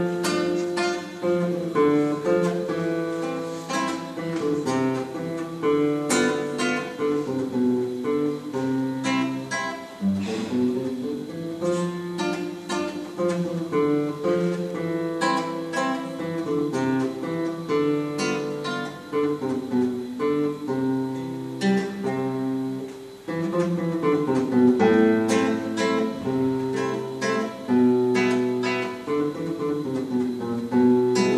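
Solo nylon-string classical guitar playing a waltz: a plucked melody over bass notes, with a brief break about two-thirds of the way through before the playing resumes.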